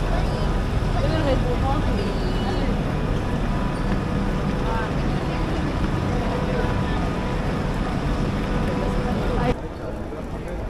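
Busy railway platform ambience: many people chattering and moving about, over a steady hum from trains standing at the platform. The level drops suddenly near the end.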